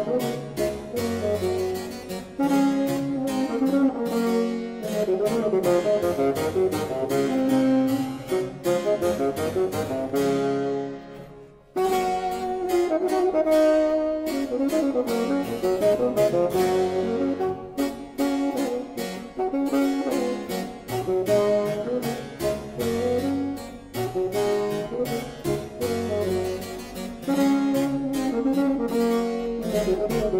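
An 18th-century bassoon sonata played on bassoon and harpsichord: the bassoon plays a sustained melody over quick plucked harpsichord chords. The music breaks off briefly a little before halfway through, then resumes.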